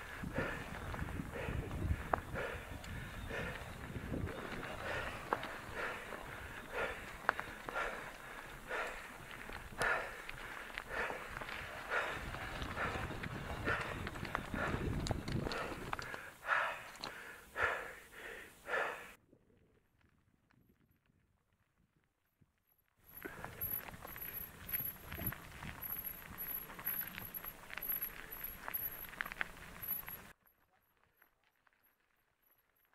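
Mountain bike tyres crunching and rattling over a loose, rocky gravel track in uneven crackles. The sound cuts out completely for about four seconds just past the middle, then carries on.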